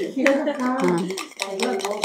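A woman's voice over a few light clinks of a utensil stirring whipped cream in a ceramic bowl.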